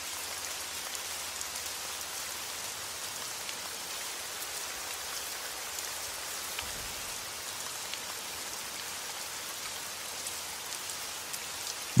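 Light rain falling steadily, an even hiss of drops on a surface.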